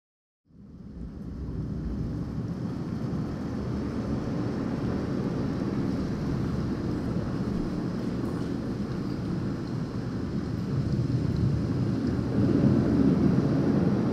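Low, steady rushing noise, like wind and surf, fading in over the first second or two and growing louder near the end.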